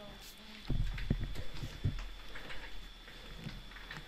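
A few low, dull thuds about a second in, with faint voices from the class answering a question.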